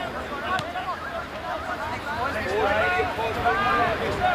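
Young men's voices shouting calls as a rugby lineout forms, growing louder in the last second and a half before the throw-in.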